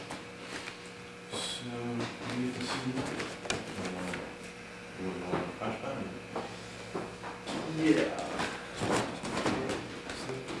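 Indistinct male voices talking off-microphone, loudest with a short 'yeah' near the end, over a faint steady hum and a few light knocks and scuffs.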